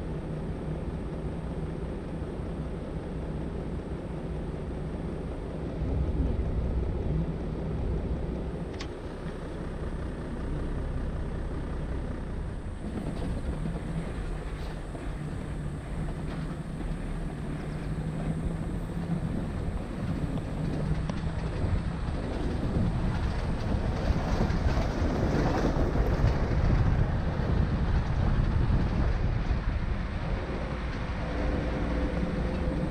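Safari vehicle's engine running with a steady low hum, then the vehicle driving along a dirt track, the rumble of engine, tyres and wind getting louder in the second half.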